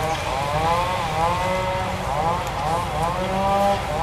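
A baby monkey calling over and over, high-pitched whimpering cries that rise and fall and run almost without a break, over a steady low rumble.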